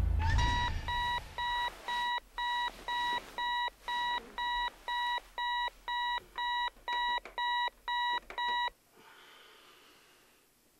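Bedside alarm clock beeping: a steady electronic beep about twice a second, cut off suddenly near the end as the sleeper reaches over and shuts it off.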